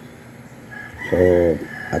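Quiet room noise, then a single short spoken word in a man's voice about a second in, with a faint thin high tone running underneath.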